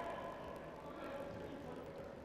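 Faint sports-hall ambience: a distant voice calling out, echoing in the hall and fading within the first second, over a steady low murmur.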